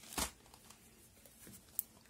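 A short soft thump and rustle of a cotton pad being handled just after the start, then quiet with one faint tiny click near the end.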